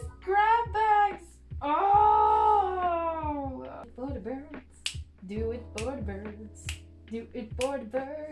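A woman's high-pitched, wordless squeals and whimpers of overwhelmed excitement: short squeals at first, then one long falling squeal about two seconds in, then shorter wavering whimpers broken by quick sniffs. Soft background music with sustained notes sits underneath.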